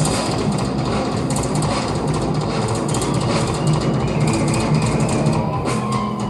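Hard rock band playing live, heard on an audience bootleg recording: a dense, steady wall of drums, bass and electric guitar with no singing.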